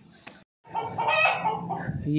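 A rooster crowing once, one call of about a second that starts about halfway in.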